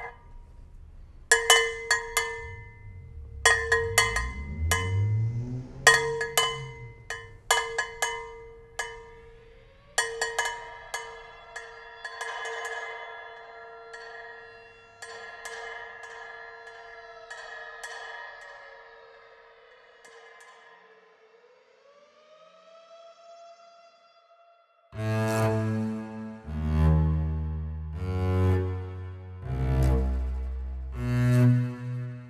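Cowbell struck many times in an uneven rhythm for about ten seconds, its metallic ring fading slowly afterwards. Near the end a tone slides upward, then low bowed-string music begins about 25 seconds in.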